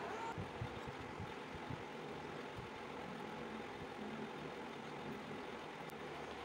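Steady background rumble and hiss, like distant traffic or a running motor, with a few soft low thumps in the first three seconds.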